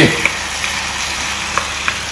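Browned chicken pieces, onions and peppers sizzling in a cast-iron skillet as a wooden spoon stirs them, with a steady frying hiss and a few light knocks of the spoon against the pan.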